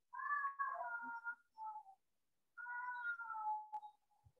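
A cat meowing several times: short calls and one long meow that falls in pitch near the end.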